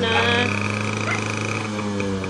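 Small motorcycle engine running steadily just after it has been started, a constant low hum with a steady high tone over it.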